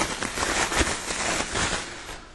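Plastic packaging crinkling and rustling as it is handled, a dense run of small crackles.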